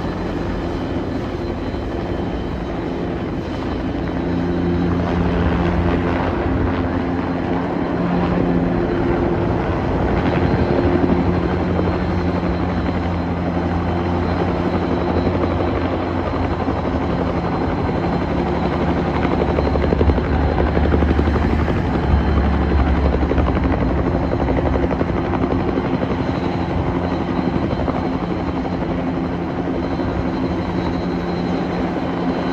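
Firefighting helicopter with a water bucket slung on a long line, its rotor and engine running steadily as it hovers low to dip the bucket into a river. The rotor sound gets louder from a few seconds in and is loudest a little past the middle.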